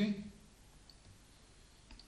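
Computer mouse clicking, a faint tick about a second in and a sharper click near the end, while a ball shape is moved on the whiteboard software.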